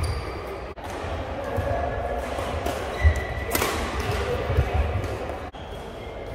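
Badminton doubles rally: a sharp crack of a racket hitting the shuttlecock about three and a half seconds in, with players' shoes squeaking briefly on the court floor and thudding footfalls.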